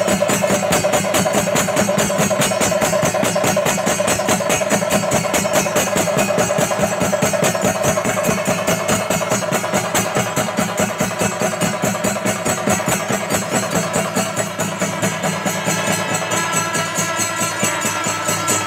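Pandi melam temple ensemble in full cry: chenda drums beaten in a fast, even stream of strokes with ilathalam cymbals clashing over them, while kombu horns and kuzhal reed pipes hold and weave notes above the drumming, the pipe melody standing out more near the end.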